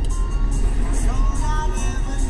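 A song playing on a car stereo inside the cabin, over the steady low rumble of the car driving.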